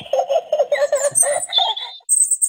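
A person giggling in a quick run of short, light laughs. A brief high steady tone sounds near the end.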